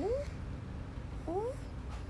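A young boy's two short rising whimpers, one at the start and one just past halfway, while he fake-cries in a sulk.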